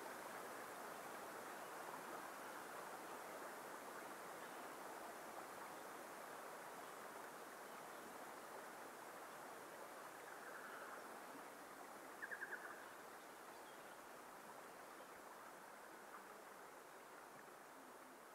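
Faint outdoor ambience: a steady rushing haze that slowly fades, with one short trilled animal call about twelve seconds in.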